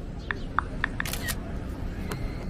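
Outdoor ambience with a low rumble, a few short high chirps like small birds, and a brief double click with a hiss about a second in.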